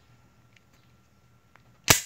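Beretta 9000S pistol's slide snapping forward into battery: one sharp metallic clack near the end, after a few faint handling clicks.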